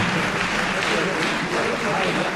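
Audience applauding steadily, with voices in the crowd mixed in.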